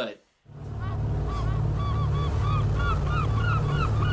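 A segment jingle played back from a laptop: a steady low rumble under a quick run of short honk-like calls, starting about half a second in.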